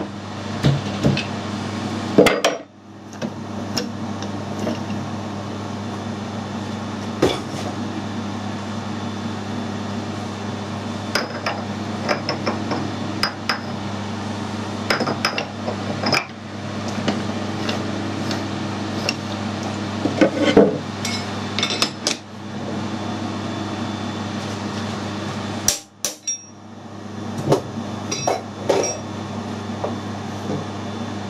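Scattered metal clanks, knocks and clinks as a lathe's three-jaw chuck is taken off the spindle nose with a chuck key and a collet chuck is fitted in its place, over a steady low machine hum.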